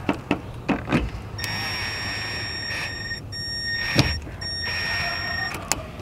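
Power drill driving Phillips-head screws into a third brake light on a pickup's cab roof. The motor whines steadily, starting about a second and a half in, stops briefly twice, and cuts off shortly before the end. There are a few light clicks before it starts and a sharp click about four seconds in.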